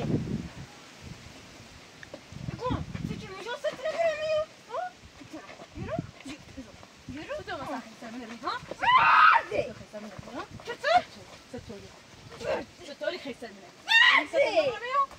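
Women's raised voices in a quarrel, shouting and crying out in separate bursts, the loudest about nine seconds in.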